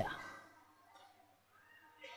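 A man's speaking voice trailing off at the end of a phrase, fading out over about half a second, then near silence: room tone.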